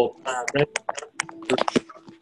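Typing on a computer keyboard: a quick run of key clicks under a person talking.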